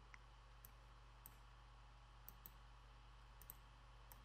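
Near silence: steady low electrical hum with a handful of faint computer mouse clicks spread through.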